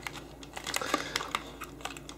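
Packaging crinkling and rustling as an FM transmitter and its cable are pulled out of a white paper insert by hand, with irregular small clicks.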